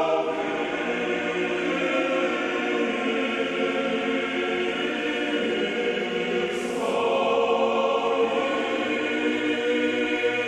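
Male choir singing unaccompanied Russian Orthodox chant in sustained chords, with a new phrase beginning about seven seconds in.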